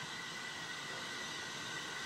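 Andrew Barclay steam locomotive approaching slowly in the distance: a steady hiss with faint, held high tones over it.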